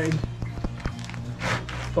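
Mineral-surfaced roofing felt being folded and pressed down by hand over a card stiffener, giving a scatter of short crackling clicks and a brief rustle about one and a half seconds in, over steady background music.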